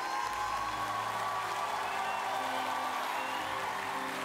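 Stage music with one long held note, over audience applause.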